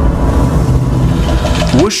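Ominous horror-film soundtrack: a deep, steady rumble under sustained tones. A man's narrating voice comes in at the very end.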